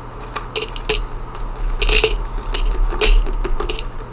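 Loose coins being poured into a glass pasta jar: a run of metallic clinks and jingles, with louder clatters about two seconds and three seconds in.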